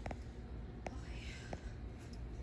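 Quiet room tone with three faint clicks, each under a second apart, and faint whispering.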